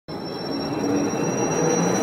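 Logo-intro sound effect: a noisy swell that cuts in suddenly and builds steadily, with a thin high whistling tone held over it, leading into the intro music.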